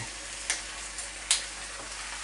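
Tomato sauce sizzling in a frying pan as drained penne are tipped in, with two short sharp clicks, about half a second and a second and a quarter in.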